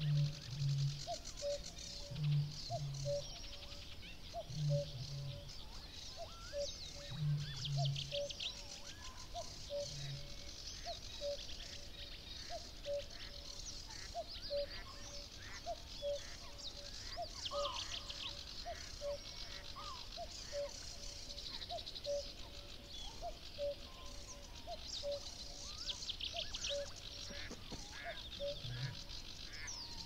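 A common cuckoo calls its two-note 'cuck-oo' over and over, about once a second, over a dawn chorus of smaller songbirds. During the first ten seconds a Eurasian bittern gives a series of deep, low booms in close pairs.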